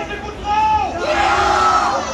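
A crowd of riders on a swinging funfair thrill ride shouting together in long drawn-out calls, several voices at once, loudest in the second half.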